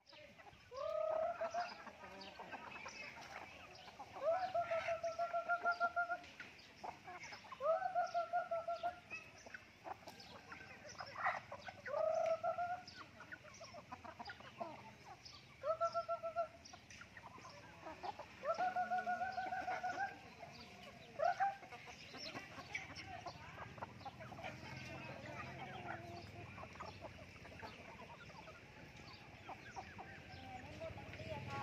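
A flock of young chickens calling while feeding: a series of drawn-out calls, each rising at the start and then held for up to two seconds, about eight in the first twenty seconds. The calls then fade to a quieter background of light clicks and faint peeping.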